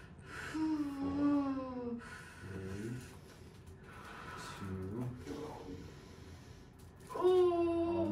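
A woman moaning and breathing hard in pain as deep hand pressure works a swollen knee capsule: a long falling moan about a second in, shorter moans in the middle, and a higher, held moan near the end.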